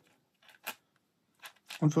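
A few light clicks of plastic parts being fitted together as a PLA cover is clamped over a 3D-printed harmonica magazine. The sharpest click comes about two-thirds of a second in.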